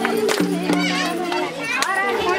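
Nepali Teej folk dance music with a steady held low tone and sharp percussion strokes. Handclaps and a crowd of women's voices sit over the music.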